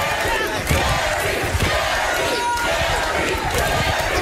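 A studio audience yelling and shouting as two women brawl on stage, with their screams and the thuds of scuffling bodies in a loud, continuous din.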